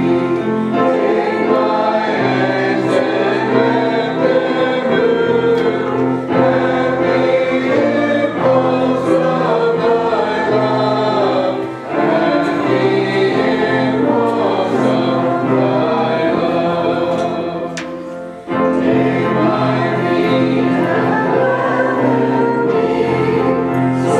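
Church congregation singing a hymn together in unison and parts, with brief breaks between lines about halfway through and again about three-quarters through.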